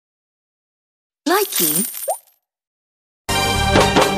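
The Likee app's end-of-video sound logo: after dead silence, a short voice tag saying "Likee!" with a bright chime shimmering over it, about a second long. Near the end, music starts.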